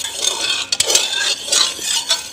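A metal ladle stirring thick cooked lentil dal in a pot, scraping and knocking against the pot's sides, with a few sharp clinks just under a second in.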